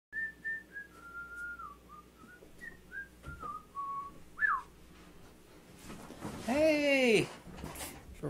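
A man whistling a short tune, the pitch stepping up and down through several notes, ending with a quick falling slide about four and a half seconds in. Near the end comes a louder drawn-out sound that rises and falls in pitch.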